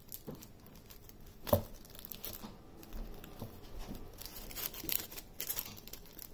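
A small black cloth drawstring dice pouch being worked open by hand: faint rustling and crinkling with a few light clicks, busier near the end as the dice come out.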